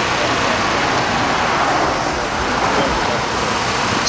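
Road traffic noise from vehicles going by on the street, a steady loud rush with faint voices underneath.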